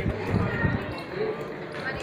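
Indistinct voices of people talking nearby, with scattered low, dull thumps, most of them in the first half second.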